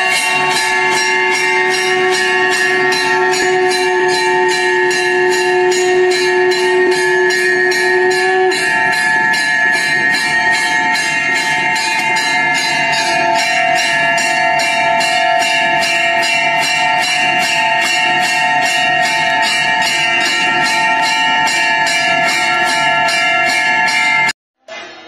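KDM portable speaker playing loud recorded bell ringing: an even, rapid beat of strikes over several held tones, the lowest of which stops about eight and a half seconds in.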